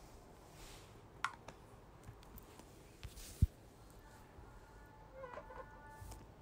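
Faint wet squishing of a hand mixing goat brains into red masala in a plastic bowl, with a light click and one sharp knock about three and a half seconds in. Faint pitched tones sound near the end.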